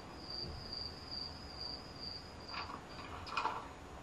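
Crickets chirping: a thin, high chirp repeating about twice a second that stops about three seconds in, followed by a couple of faint short sounds near the end.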